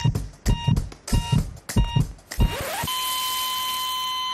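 Heart-monitor sound effect: short electronic beeps about every 0.6 s over low heartbeat-like thumps. At about two and a half seconds in they give way to one continuous flatline tone with a hiss, the signal of a heart stopping.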